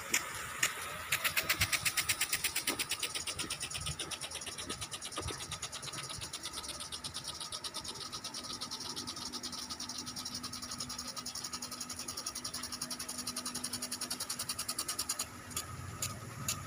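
Impact sprinklers spraying water: a rapid ticking chatter, about ten ticks a second, from about a second in until near the end, when it gives way to slower single ticks. The fast chatter is the sprinkler arm on its return sweep, and the slow ticks are its forward stepping, all over the hiss of the spray.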